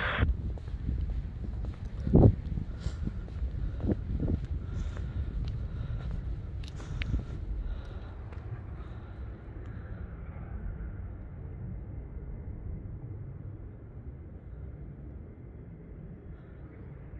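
Wind rumbling on a phone microphone outdoors while walking, with a few short knocks from footsteps and handling; the loudest knock comes about two seconds in, and the noise slowly fades.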